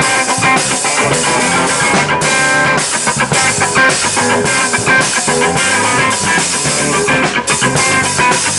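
A live rock band playing an instrumental passage: electric guitar strumming over bass guitar and a drum kit keeping a steady beat.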